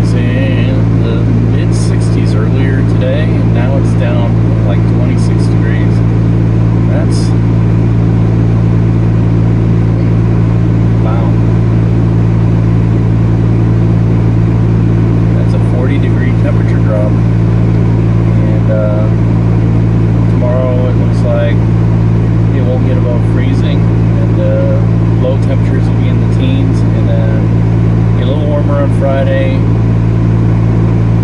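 Steady low hum of a car's idling engine heard from inside the cabin, with a man talking over it.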